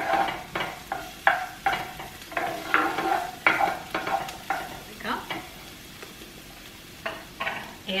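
Wooden spoon stirring diced onion and minced garlic in a hot nonstick skillet, quick scraping strokes two to three a second over the sizzle of frying. The stirring stops about five seconds in, leaving the sizzle, with a couple more strokes near the end.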